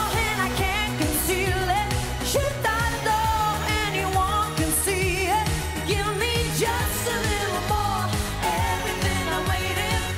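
Female lead vocal sung live into a handheld microphone over a Eurodance-pop backing track with a steady driving beat and bass.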